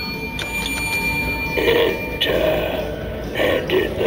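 A bell's ring, struck just before, fades away over the first two seconds. Short voice-like bursts follow from about a second and a half in.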